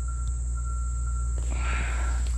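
Steady high-pitched drone of insects in woodland, over a low rumble on the microphone; a brief rustle near the end.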